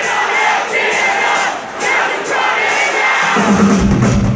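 Rock-concert crowd shouting and singing along over thin music with no bass or drums. About three and a half seconds in, the band's drums and bass come back in loud.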